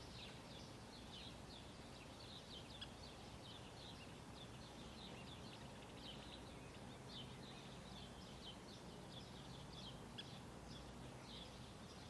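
Quiet outdoor ambience with many faint, short bird chirps repeating irregularly.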